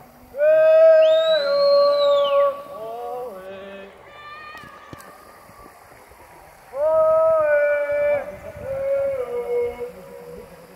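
A person shouting two long, drawn-out calls across a canyon, each followed by a fainter, shorter call. The cliffs here give a strong echo.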